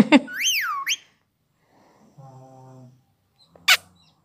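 Indian ringneck parakeet whistling: a sharp click, then a short whistle that rises and falls in pitch over about a second. A brief harsh squawk comes near the end.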